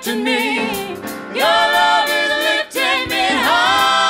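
Live soul band's singers holding long, wavering notes in harmony, a female lead voice to the fore, in three sustained phrases with little bass or drums beneath them.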